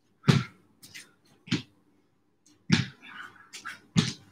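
Feet landing with short thuds on gym mats during jump squats, four landings about a second and a bit apart, with a few fainter taps in between.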